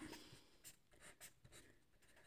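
Faint scratching of a felt-tip marker on paper in several short strokes as brackets and a box are drawn.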